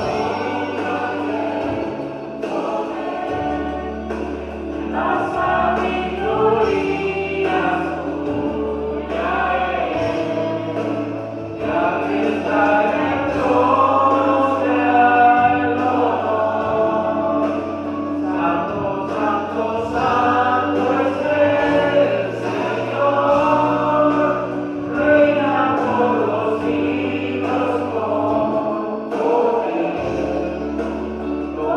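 A man singing a gospel song into a microphone over an accompaniment with sustained bass notes that change every second or two.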